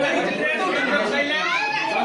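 Many people talking over one another in a crowded room: a steady, loud hubbub of overlapping voices.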